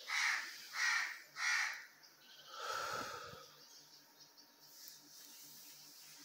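A bird giving three short, harsh calls in quick succession, about two-thirds of a second apart, followed about a second later by a softer, longer sound.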